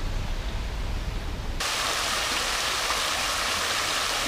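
A low rumble, then, about a second and a half in, the steady splashing hiss of a tiered stone fountain pouring into its basin starts abruptly.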